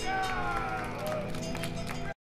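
Amplified live rock band's sound ringing on at the end of a song while a voice gives a long, falling call and a few scattered claps go off.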